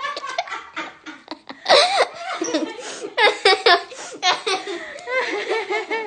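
A woman laughing heartily in repeated bursts.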